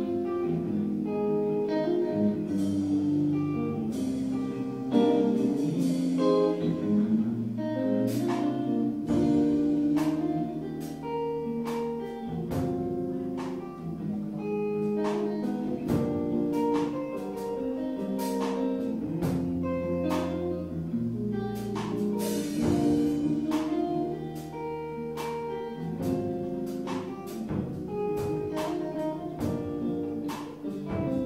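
Live band of electric guitar, bass guitar and drum kit playing an instrumental piece, with held guitar notes over a bass line and regular drum and cymbal hits.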